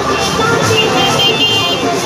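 Busy street crowd noise with traffic, held horn-like tones and music playing, all mixed together at a steady loud level.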